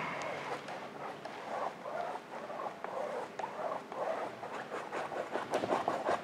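Flat bristle brush scrubbing acrylic paint across a canvas in back-and-forth strokes, a soft scratchy rubbing that swells and fades with each stroke, sharper near the end.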